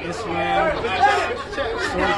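Speech only: a man talking, with the chatter of other voices around him.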